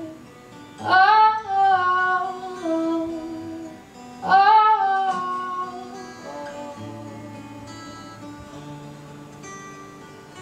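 A woman's voice holds two long sung notes over acoustic guitar, the second about three seconds after the first. Then the guitar rings on alone and fades away as the song ends.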